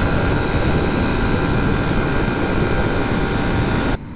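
Steady rush of wind on the microphone over a Honda C90 Cub's small four-stroke single-cylinder engine held at cruising speed on the open road.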